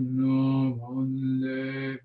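A Buddhist monk chanting devotional homage in a low male voice, held on one nearly steady pitch in long drawn-out syllables with brief breaks for breath.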